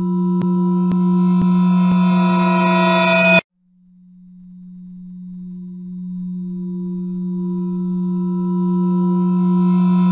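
A steady electronic drone tone with many overtones, held on one low pitch. It cuts off abruptly a little over three seconds in, then fades back in slowly and swells until it is loud again.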